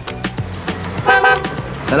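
A car horn gives one short, steady toot about a second in, over background music with a steady beat.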